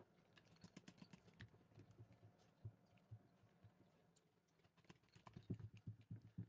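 Near silence, broken by faint scattered clicks and light knocks from handling a ring terminal, cable and hand crimping tool, with a few more knocks near the end.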